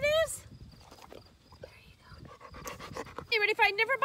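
A dog panting softly and irregularly close by. Near the end a high voice breaks in.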